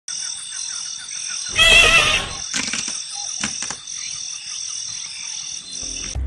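Rainforest ambience: a steady high buzz throughout, with one loud, wavering animal call about one and a half seconds in that lasts about half a second, then a few short clicks.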